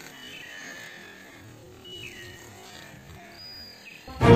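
A few faint bird calls over a quiet outdoor background: short whistles, one sliding down in pitch about two seconds in and a higher one near the end.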